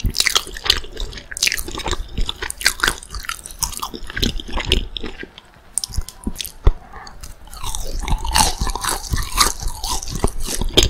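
Close-miked chewing and biting of crispy fried McDonald's spicy chicken nuggets: a dense run of crunches throughout, easing briefly a little past halfway before the chewing picks up again.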